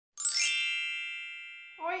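An intro chime sound effect: one bright, high ringing strike about a quarter second in that dies away slowly over the next second and a half.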